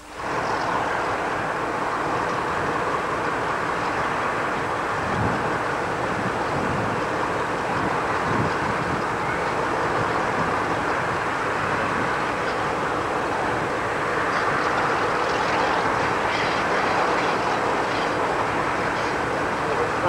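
Steady running noise of a train hauled by the preserved Class 52 'Western' diesel-hydraulic D1010, heard from an open carriage window as it comes slowly into a station.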